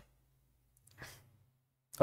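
Near silence with room hum; about a second in, one short, faint breath from a man.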